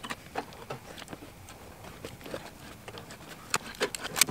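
Faint, irregular small clicks and scratches of metal wire mesh being handled and pressed against a wooden batten, with one sharper click near the end.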